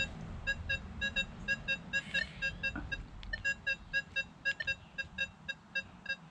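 Nokta Legend metal detector sounding a rapid string of short, high, same-pitched beeps, several a second, as its coil sits over a test target on the board.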